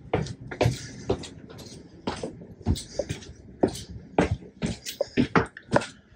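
Footsteps walking along the hard floor of an empty train carriage, about two steps a second.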